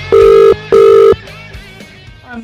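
Telephone ringing tone heard down the line as a call is placed: one loud double ring, two steady 0.4-second pulses a fifth of a second apart, the British ring cadence. Rock music with guitar carries on faintly underneath and fades away.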